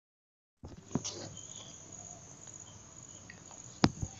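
Faint room background with a steady high-pitched chirring hiss that begins about half a second in, broken by two sharp clicks, one about a second in and a louder one near the end.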